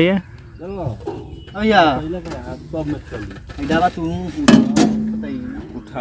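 Men's voices talking indistinctly in short phrases with pauses.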